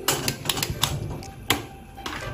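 Sharp, irregular clicks of a gas igniter sparking to light a ring gas stove burner, about half a dozen in quick succession, the sharpest about a second and a half in.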